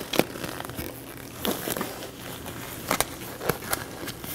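Sterile gloves being worked onto the hands: soft rubbery rustling with a few sharp light clicks and snaps as the fingers are adjusted.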